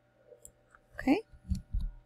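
A few light clicks of computer controls as the photo is zoomed out, then a couple of low, dull thumps near the end, around a single spoken 'Okay'.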